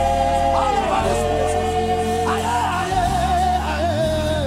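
Live Ghanaian gospel worship music: a lead singer and backing vocalists singing long, wavering notes together over a steady band accompaniment with a deep bass.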